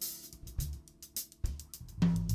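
Live jazz band in a gap between saxophone phrases: the drum kit keeps time with kick-drum thumps and cymbal and hi-hat strikes over a low electric bass line, while the saxophone's held note dies away at the start.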